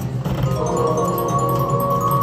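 IGT Wolf Run Eclipse video slot machine playing its win tune as the reels land on stacked wilds: bell-like mallet tones start about half a second in and hold, over a steady low hum.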